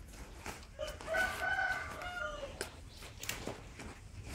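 A rooster crowing once: one long call about a second in, held level and then dropping in pitch at its end.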